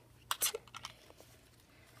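A few light clicks and taps in the first half second as the BeanBoozled spinner and the plastic jelly-bean box are handled.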